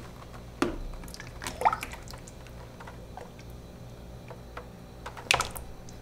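Thick cold process soap batter poured from a large plastic container into a plastic measuring pitcher: a soft, quiet pour with a few light clicks and knocks of plastic. The batter has just been brought to emulsification and is being split off into pitchers.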